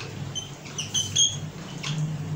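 Marker pen squeaking on a whiteboard in a few short strokes while a word is written.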